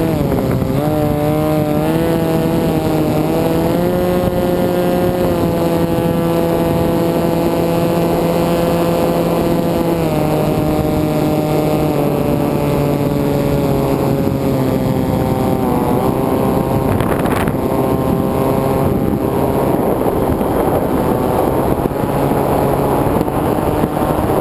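Knurrus FPV flying wing's motor and propeller heard from the onboard camera: a steady buzzing drone that drops in pitch in steps about ten and sixteen seconds in as the throttle is eased. Wind rushes over the airframe, and near the end the buzz fades under it as the wing flies low over the grass.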